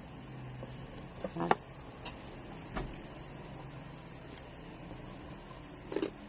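A steady low hum with a few soft clicks and small mouth sounds of someone eating, the clearest about one and a half seconds in.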